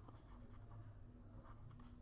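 Faint tapping and scratching of a stylus writing on a tablet, over a low steady hum.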